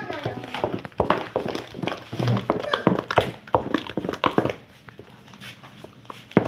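Wooden spoon beating a runny flour batter in a stainless steel bowl: irregular knocks of the spoon against the metal with wet slaps of batter, about two a second, dying away about four and a half seconds in.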